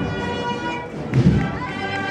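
Processional wind band playing a slow Holy Week march: sustained brass chords over a deep bass drum beat about every second and a half, struck twice.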